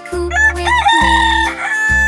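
A rooster crows once, cock-a-doodle-doo: a rising call that then holds its pitch for about a second, over the song's backing music.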